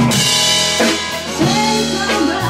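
Jazz band playing live, with drums. A cymbal-like splash rings out right at the start, over sustained low notes and a bending melodic line.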